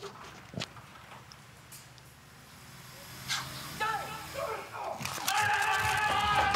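Four-man bobsleigh start. Shouted calls ring out about four seconds in. About a second later the crew pushes the sled off, and a loud, sustained mix of shouting and runners on the ice sets in.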